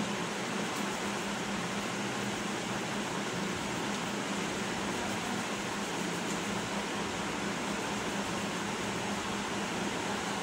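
Steady room noise, an even fan-like hiss with a faint low hum, unchanging throughout.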